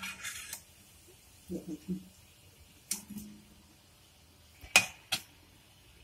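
Quiet handling of dough being rolled up by hand on a wooden rolling board, with two sharp clicks a fraction of a second apart near the end. A few murmured words come about a third of the way in.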